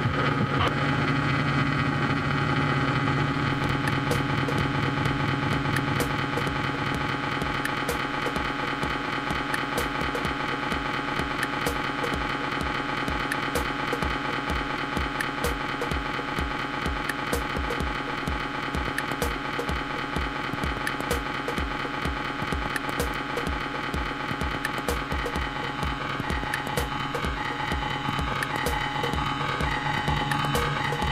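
Electronic dance music from a DJ set: sustained synthesizer chords over a steady kick drum beat.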